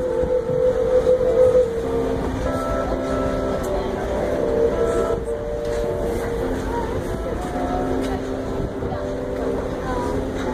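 Passenger train riding on the rails, heard from an open coach window, a steady rumble under several held tones that shift in pitch every second or so.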